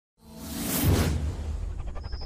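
Intro-animation whoosh sound effect: a rush that swells to a peak about a second in and then dies away, over a deep, steady bass rumble.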